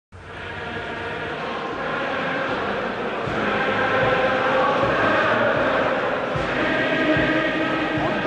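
A large mass of voices singing together in a sustained, chant-like song, fading in at the start and swelling a little louder.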